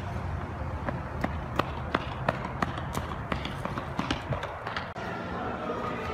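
Skateboard on pavement: a steady low rumble from the wheels with sharp clicks about three a second.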